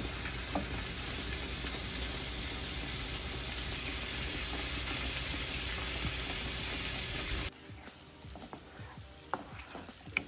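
Skillet of peppers, garlic and scallions in oil sizzling steadily just after a splash of white wine has gone in. About three-quarters of the way through the sizzle drops suddenly to a much quieter level, with a few clicks of a spoon stirring the pan near the end.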